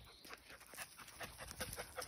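Rhodesian Ridgeback puppy panting, over quiet, irregular crunching of footsteps on dry leaves and dirt.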